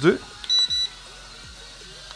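Toy drone's radio transmitter giving a short high-pitched beep about half a second in, confirming the switch to speed 2.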